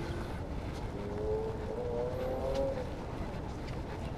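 Steady low outdoor background rumble, with a faint wavering tone from about one second in until nearly three seconds.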